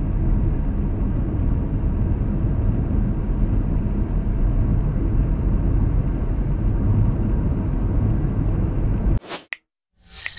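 Steady low rumble of road and engine noise from a moving vehicle driving at night. It cuts off suddenly about nine seconds in.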